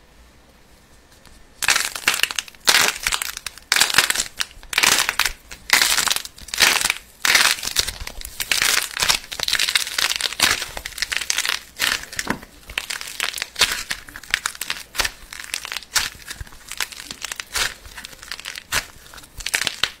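Hands squeezing, stretching and pulling apart soft putty studded with metallic foil pieces, making repeated crinkling and tearing sounds. It is quiet at first, and the crinkling starts about one and a half seconds in and goes on in quick, uneven bursts.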